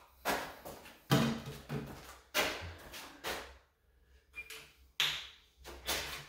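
Hand caulking gun being handled and pumped to lay construction adhesive on a panel: a string of sharp clunks and clicks, roughly one a second.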